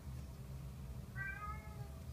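A kitten meows once, a single call a little under a second long, about halfway through.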